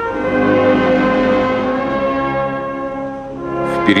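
Slow funeral music from a brass band, playing long held chords that change at the start and fade slightly near the end.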